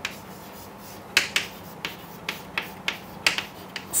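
Chalk clicking against a blackboard as a word is written, about nine short sharp clicks spread across a few seconds.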